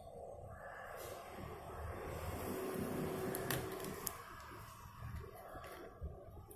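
Faint sounds of a felt-tip marker drawing on paper and being handled, with two short clicks a little past the middle.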